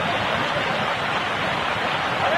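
Floodwater from a cloudburst rushing down a rubble-strewn street in a steady, loud torrent, with rain falling.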